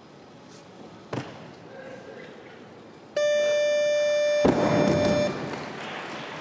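Weightlifting down signal: a loud, steady electronic tone held for about two seconds, starting about three seconds in, marking the lift as complete. Partway through it, a loud crash as the loaded 145 kg barbell is dropped onto the platform, followed by crowd cheering; one sharp knock comes earlier, about a second in.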